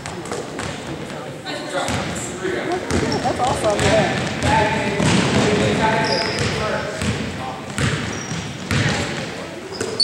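Basketball dribbling and bouncing on a hardwood gym floor, with short sneaker squeaks and indistinct shouting voices that grow louder about three seconds in, all echoing in a large gym.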